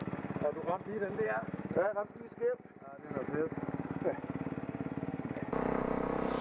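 Motorcycle engine idling with a steady, even beat under people talking. About five and a half seconds in it gives way to a motorcycle engine running louder on the move.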